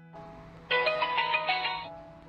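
Mini Bluetooth selfie speaker sounding its power-on jingle: a quick run of bright electronic notes lasting about a second, starting partway in, over soft piano background music.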